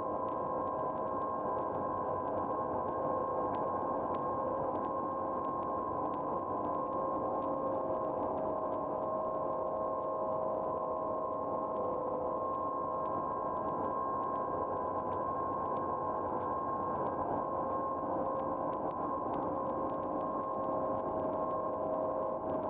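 Dark ambient drone: several steady held tones over a dense hissing noise bed, with faint scattered crackles, unchanging throughout.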